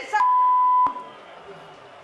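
A steady pure-tone censor bleep, lasting under a second and ending in a click, masking a swear word in the dialogue.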